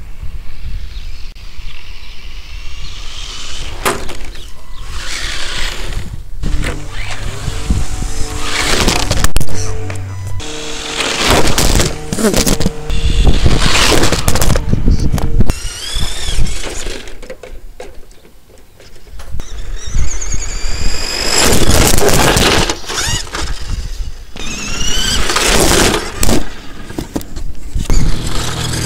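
Background music over a radio-controlled car's motor, which whines up in pitch several times as the car speeds off. Sharp knocks and crashes run through it as the car tumbles.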